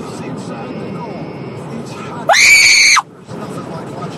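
A woman's sudden, loud, shrill scream of fright lasting under a second, a little over two seconds in, over the steady rumble of a moving car's cabin.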